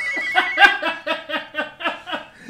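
Men laughing heartily, a quick run of 'ha' pulses about five a second.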